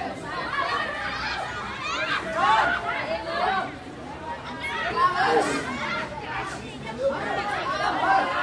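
Several high-pitched voices shouting and calling over one another, the calls of women rugby players and their supporters during open play. The shouting eases off briefly about halfway through, then picks up again.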